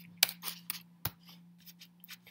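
Computer keyboard keystrokes: a handful of irregular, separate key clicks as a misspelled word is corrected.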